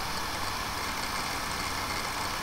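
Steady background hiss with a faint low hum: room tone in a pause between words.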